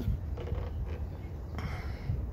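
The aluminium hood of a 2006 Mazda RX-8 being lowered and shut: light metallic clinks about half a second in and a soft clunk about a second and a half in, over a low steady rumble.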